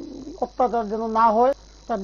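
A man talking, with a short pause at the start and another near the end; the sound is thin and band-limited.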